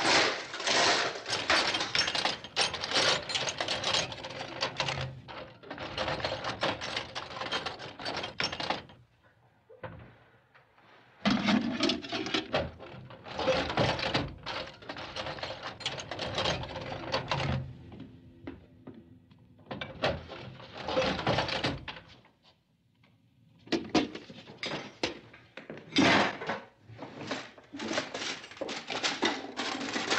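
Rummaging through kitchen drawers: repeated wooden knocks and thunks, with small hard objects clattering and rattling. Two short pauses break it, about a third of the way in and again past the middle.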